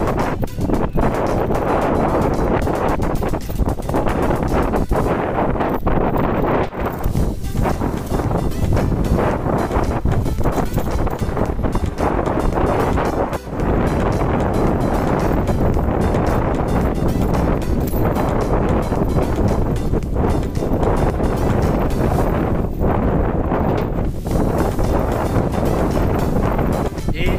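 Wind buffeting the microphone: a loud, steady rushing rumble with no pitch, dipping briefly about halfway through.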